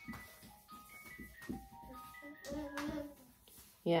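A children's toy playing a simple chiming melody, one short note at a time. Faint knocks and a brief voice sound about two and a half seconds in.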